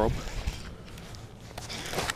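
Faint handling sounds from a baitcasting rod and reel being worked by hand, with a few light clicks near the end, over a low rumble of wind on the microphone.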